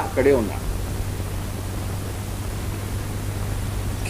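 A short spoken syllable at the very start, then a steady low hum with faint hiss from the recording.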